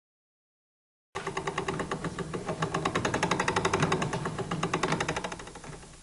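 Textile machinery, a loom, clattering in a rapid, even rhythm over a steady hum. It starts suddenly about a second in and fades away near the end.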